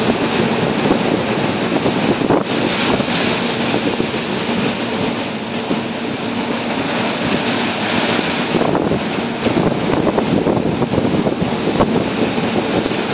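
Storm seas breaking against and washing over the stern deck of an emergency response and rescue vessel, with wind buffeting the microphone. The water and wind noise surges and eases over a steady low hum from the ship.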